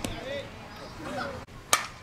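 Faint spectators' chatter, with a thin click at the start and a louder, sharp crack about three-quarters of the way in: the knock of a softball striking a glove or bat during play.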